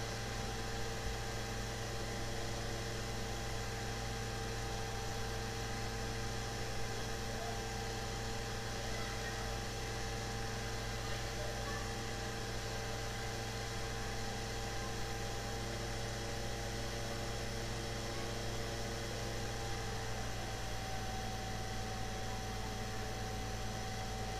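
Steady low electrical hum with an even hiss, the background noise of the recording, with a few faint steady tones running through it; one of them stops about twenty seconds in.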